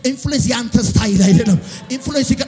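A man's voice preaching through a microphone and PA in a fast, rhythmic, chant-like cadence, with music underneath.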